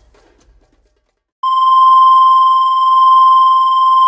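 A loud, steady electronic beep tone starts about a second and a half in and holds without a break, used as a sound effect over a title card.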